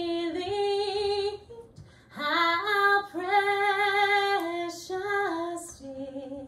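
A woman singing solo, holding long notes with vibrato in short phrases, with a brief pause about a second and a half in.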